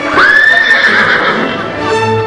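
A horse's whinny: one long call, about a second, that rises sharply at the start, holds high and wavers. Music comes in near the end.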